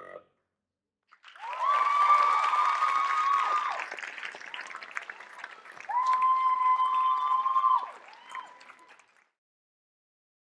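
Audience applauding and cheering, starting about a second in, with two long high-pitched cheers held over the clapping, then fading out near the end.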